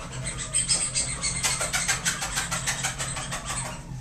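A green plastic squeaky dog toy squeezed over and over to catch a dog's interest: a quick, even run of short, high squeaks.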